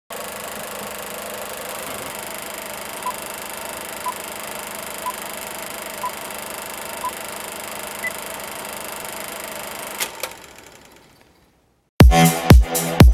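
Film-countdown sound effect: a steady old-projector whirr with a short beep about once a second, five in a row, then a single higher beep. Near the end a click, and the whirr fades out.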